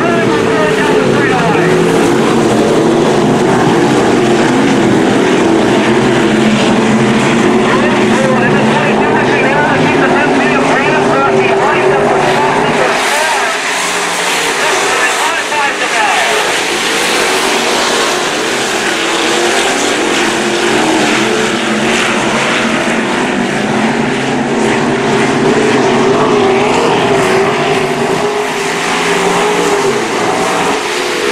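A pack of dirt-track stock cars racing together, a steady blended drone of several engines at speed, dipping for a couple of seconds about halfway through before building again.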